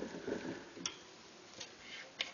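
Hamster moving in a plastic exercise wheel: soft pattering that dies away in the first half second, then a few sharp, light clicks.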